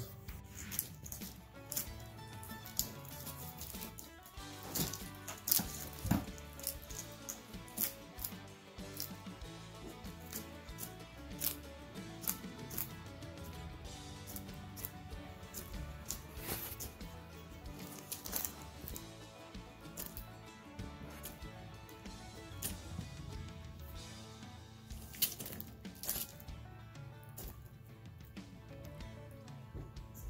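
Background guitar music with frequent short crunching clicks over it: an ackie monitor lizard chewing a feeder roach.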